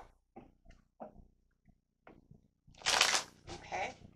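A deck of tarot cards being handled and shuffled: faint scattered sounds, then a short, loud shuffle about three seconds in, followed by a few smaller ones.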